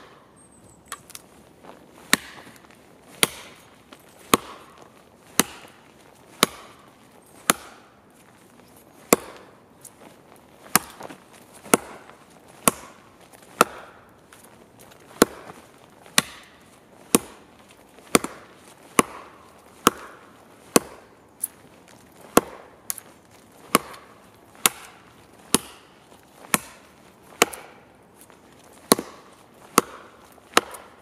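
A Schrade Makhaira brush sword chopping into the trunk of a dead tree: sharp blade-into-wood strikes, about one a second, each with a short ring after it.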